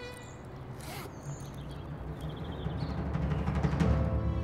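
Dramatic background score: a low drum roll, like timpani, swells up over the last second and a half and peaks at the end.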